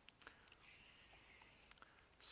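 Near silence: faint outdoor ambience with a few small ticks.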